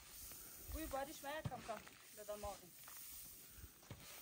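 Soft, steady rustle of wheat grain being brushed and shovelled across a plastic tarp, with faint voices in the background.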